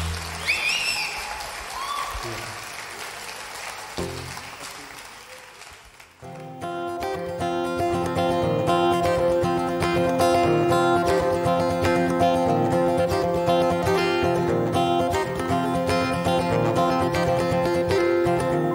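Live concert audience applauding and cheering with a few whistles, dying away over the first six seconds. Then an acoustic guitar starts strumming chords at the opening of the next song and plays on steadily.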